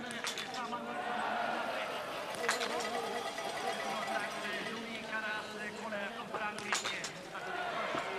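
Sharp cracks of small-bore biathlon rifle shots, a few seconds apart, over the steady babble of the stadium crowd and background voices.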